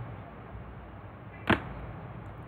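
Faint steady background hiss with one short, sharp click about a second and a half in.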